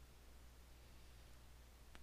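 Near silence: room tone, a faint steady low hum with light hiss.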